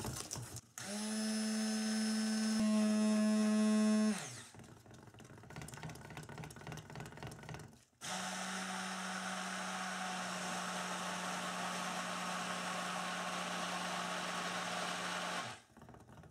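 Handheld stick blender whirring in a saucepan of soap batter, blending lye solution into oils to bring cold process soap to trace. It runs in two bursts: a short one that steps up in pitch and loudness partway through, then after a quieter pause a longer, steadier and quieter run.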